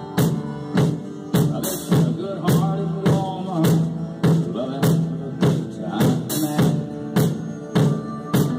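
Acoustic drum kit played in a steady country groove, a stroke roughly every half second, along with a recorded country song with its instruments and vocal.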